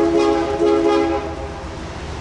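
Air horn of an approaching BNSF freight locomotive sounding two short blasts in quick succession, the second trailing off about a second and a half in.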